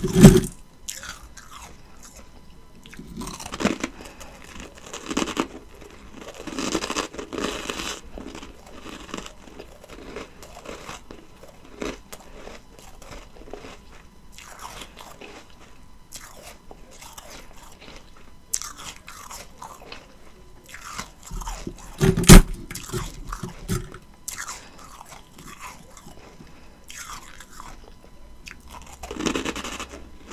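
Close-miked ice eating: a loud bite into a disc of ice at the start, then bursts of crisp crunching as the ice is chewed, with a second loud bite about twenty-two seconds in followed by more crunching.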